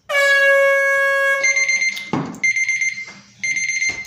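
Timer alarm going off as the two-minute challenge countdown hits zero, signalling time's up. A long low buzz lasts about a second and a half, then a higher beeping tone sounds in three short bursts, with a brief rush of noise between the first two.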